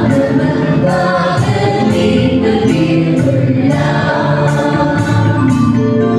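Mixed church choir singing a Tamil Christian hymn with a lead male voice on a microphone, over electronic keyboard accompaniment with a steady beat about twice a second.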